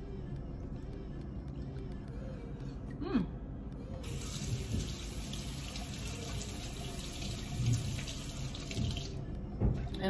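Kitchen tap running into a sink, turned on about four seconds in and off about five seconds later, with a short knock just before the end.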